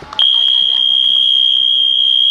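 A single long, steady, high-pitched signal tone that sets in a moment in and is held without a break.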